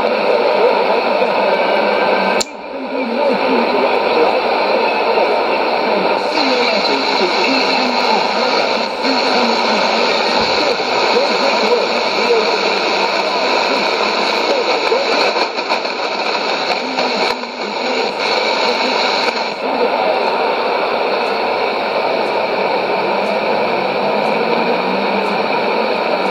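Shortwave AM broadcast on 6160 kHz played through a Sony ICF-2001D receiver's speaker: a voice buried in steady static and noise. A sharp click and a brief drop in level come about two and a half seconds in.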